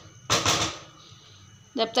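A short scraping clatter of a cooking spatula against a metal karahi, lasting about half a second.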